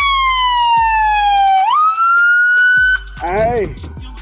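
Police car siren wailing: its pitch falls slowly, sweeps quickly back up and cuts off about three seconds in. A man shouts near the end.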